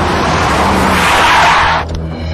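Car tyres screeching as a car skids hard to a stop, the screech growing louder and then cutting off sharply near the end.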